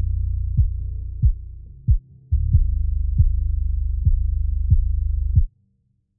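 A trap beat's low end played back on its own with the upper frequencies filtered away: a deep sustained bass note with regular kick thumps about every two-thirds of a second, muffled and throbbing. The bass fades out near two seconds in, a new note comes in, and playback cuts off suddenly about five and a half seconds in.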